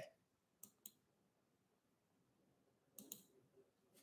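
Near silence with a few faint clicks: two short ones about half a second in and two more about three seconds in.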